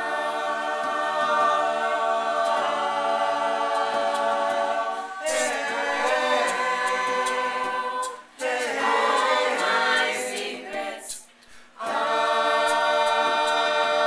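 Mixed-voice a cappella group singing unaccompanied in sustained, close-harmony chords. The singing breaks off briefly about eight seconds in and again for nearly a second around eleven seconds in.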